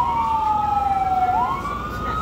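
Emergency vehicle sirens wailing: two slow rising-and-falling tones that overlap and cross, one sweeping down while the other sweeps up.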